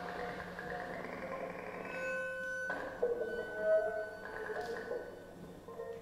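Free-improvised music: several steady, ringing pitched tones held and overlapping, with a new struck attack about three seconds in.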